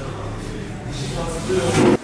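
Indistinct talking in a room over a low steady hum, getting louder near the end.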